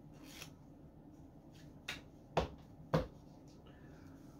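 A deck of playing cards being cut by hand, giving a few short sharp taps and clicks, the two loudest about two and a half and three seconds in.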